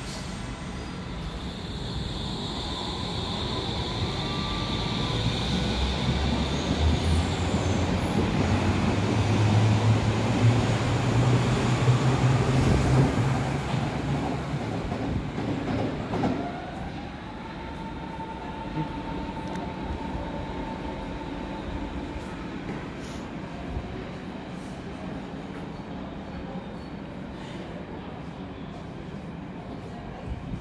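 Berlin U-Bahn train running on the rails, its motors and wheels growing louder to a peak about twelve seconds in. The sound drops off sharply around sixteen seconds, and a steady higher electric tone follows for a few seconds.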